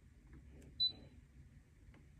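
Brother ScanNCut DX SDX125 cutting machine's touchscreen giving one short, high beep as its OK button is pressed, confirming the command before the machine starts processing.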